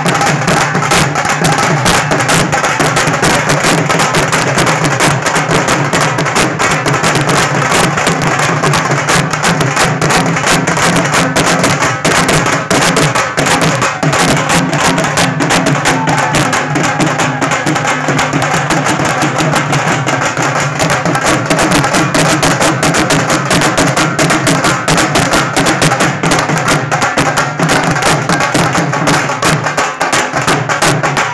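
Several Punjabi dhols beaten together with sticks: a loud, fast, unbroken drum rhythm of sharp stick strikes over deep booming bass strokes.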